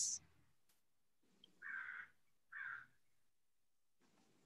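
Two short, faint harsh bird calls, one right after the other, with near silence around them.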